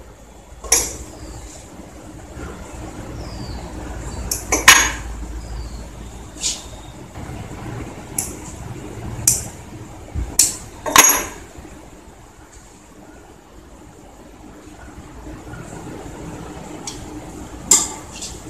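Irregular sharp metallic clicks and clinks as a metal toe ring is handled and fitted on a man's toe, the loudest about five seconds and eleven seconds in.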